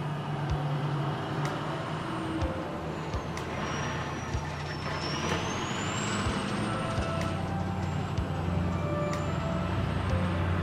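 A heavy vehicle's engine running, its low hum dropping in pitch and growing louder about two-thirds of the way through, with a thin high squeal that dips and rises midway.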